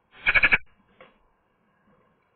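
Eurasian magpie giving one short, harsh, rattling call close to the microphone near the start, followed by a faint short note about a second in.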